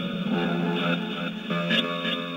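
Ghost-box software on a laptop sounding through a portable loudspeaker: a steady, music-like wash of overlapping tones.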